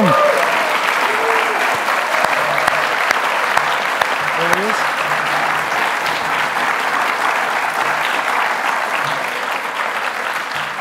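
An audience applauding steadily, with a couple of brief shouts over the clapping; the applause begins to die down near the end.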